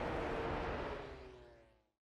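A pack of MotoGP race bikes running at speed, a blend of high-revving engine notes with a few pitches sliding slightly lower, fading out to silence about a second and a half in.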